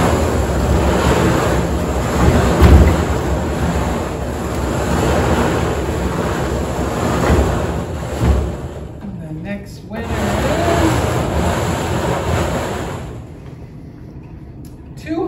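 Wooden raffle drum being turned, its load of tickets tumbling inside with a steady rushing rumble, easing for a moment about eight seconds in and stopping about a second before the end.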